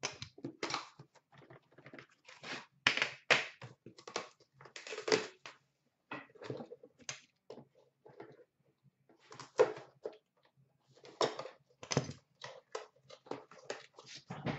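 Irregular knocks, scrapes and rustles of cardboard hockey card boxes and a metal tin being handled and set down.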